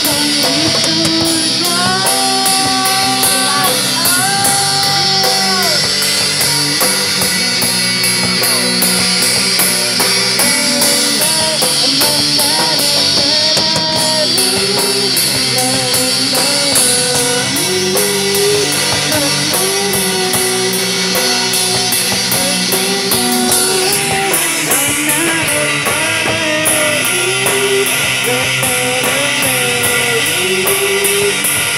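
A rock band playing loud, with electric guitar and a drum kit, the cymbals keeping a steady beat throughout.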